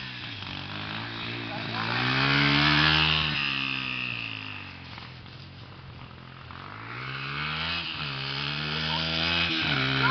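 Small dirt bike engine revving as the bike rides around, its pitch rising and falling. It is loudest about three seconds in, drops off around the middle, then builds again.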